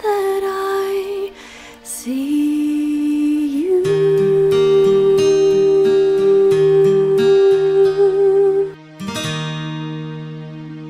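Closing bars of a pop ballad: a woman singing long held notes, the last one held for about five seconds, over soft instrumental backing. A final chord rings out and fades near the end.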